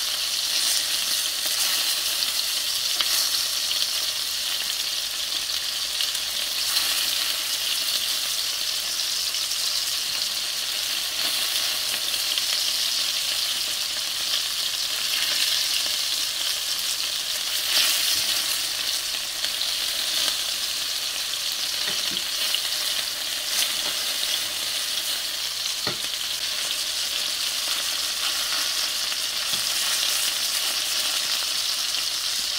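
Meatballs sizzling steadily as they brown in fat in a stainless steel pan, with a few light clicks as a utensil turns them over.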